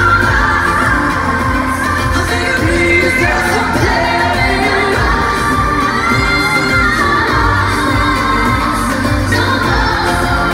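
Female pop vocal group singing live over an amplified pop backing track with a heavy bass beat, heard over an arena PA.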